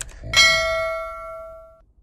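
A short click, then a single bright bell-like ding sound effect that rings out and fades over about a second and a half.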